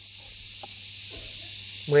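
A steady high-pitched hiss, with a couple of faint soft clicks from orchid cuttings being handled over a tray of loose bark.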